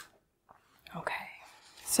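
A single sharp click at the start, then about a second of soft, breathy voice sounds as a woman draws breath before speaking.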